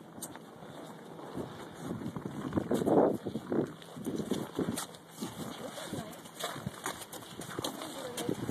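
Footsteps crunching through snow on a sidewalk: an irregular run of short crunches.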